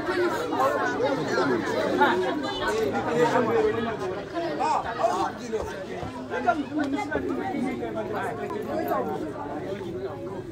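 Several people talking over one another in lively chatter.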